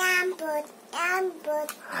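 A young child's voice in a few short, sing-song phrases.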